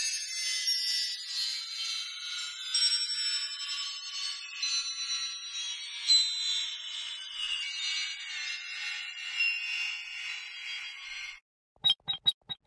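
Sampled wind chimes (Soundpaint Windchimes Ensemble, "Odd Ambience" patch) played from a keyboard: a dense wash of high metallic chime tones ringing together, their pitches drifting slowly downward, with no low end. It cuts off just before the end, and a quick run of short chime strikes starts right after.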